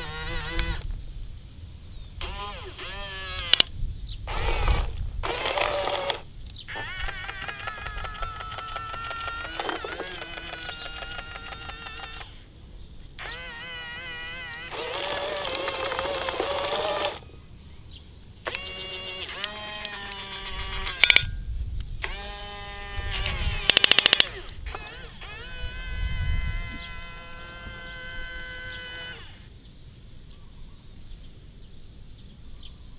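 A run of short, edited-in, voice-like sound effects. Each starts and stops abruptly with brief gaps between, and several have a wobbling or bending pitch. A steady low-pitched, tuneful sound fills the last few seconds.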